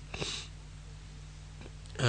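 A man's short, breathy intake of breath or sniff about a quarter of a second in, then a pause with only a steady low hum.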